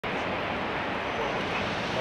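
Steady outdoor street noise: a continuous, even rumble and hiss with no distinct events.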